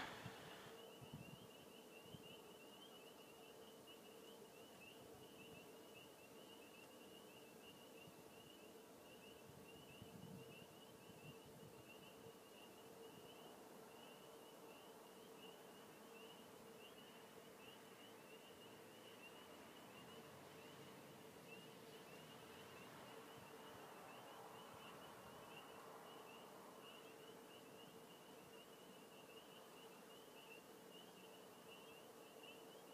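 Near silence: faint room tone with a steady low hum and a faint, slightly wavering high whine.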